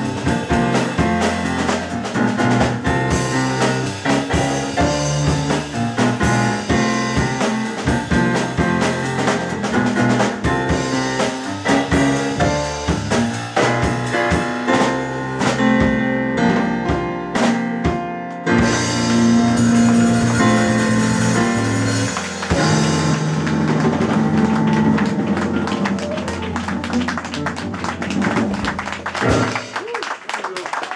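Live jazz trio of digital stage piano, upright double bass and drum kit playing the closing bars of a tune, the music stopping on a final chord just before the end.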